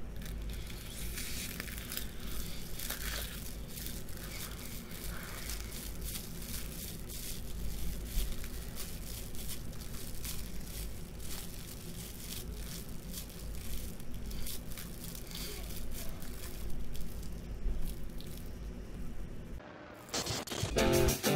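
Plastic cling film crinkling and crackling as it is pulled and crumpled over a face, a dense run of short crackles.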